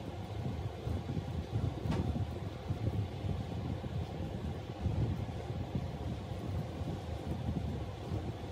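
Steady low rumbling background noise, with a faint click about two seconds in.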